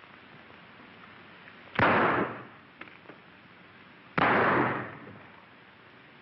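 Two gunshots about two and a half seconds apart, each starting suddenly and dying away over about half a second, over the steady hiss of an early-1930s film soundtrack.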